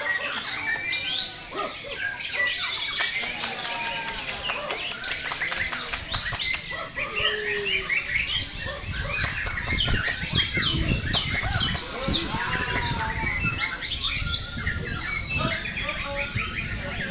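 White-rumped shamas (murai batu) singing in contest: a dense run of fast, varied high whistles, sweeps, trills and clicks from several birds overlapping. People's voices murmur underneath, most noticeably around the middle.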